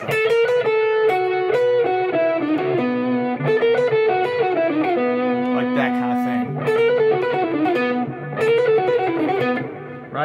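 Telecaster-style electric guitar playing a picked single-note melodic line, a bluegrass banjo-style lick, with a few slides between notes. The notes run continuously and stop just before the end.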